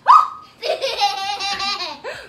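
A sudden short cry, then a woman and children laughing together in quick pulsing giggles for about a second and a half.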